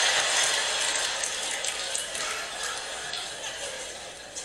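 Live comedy-show audience laughing and applauding, the clapping and laughter dying down gradually over the few seconds.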